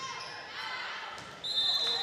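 Faint crowd voices in a gymnasium as a volleyball rally ends, then about one and a half seconds in a referee's whistle blows, one steady high tone held for about half a second.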